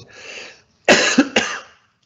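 A man coughs into his hand: two harsh bursts close together about a second in, after a short breath.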